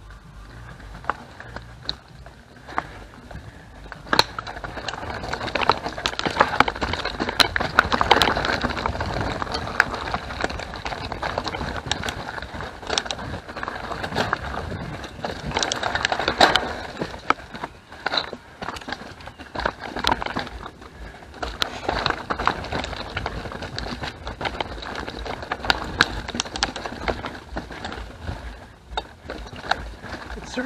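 Mountain bike rolling over rocky, leaf-covered singletrack: a steady rolling noise from the tyres with many sharp clacks and rattles as the bike hits rocks and roots. It grows louder in the rougher stretches, loudest about a quarter of the way in.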